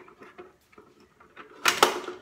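Plastic Pie Face game being cranked, with faint clicks from the handle. About one and a half seconds in, the spring-loaded hand snaps up loudly and hits the player's face.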